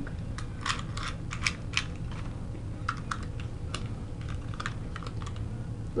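Irregular light plastic clicks and taps, as of Beyblade tops and a launcher being handled and set up, over a steady low hum.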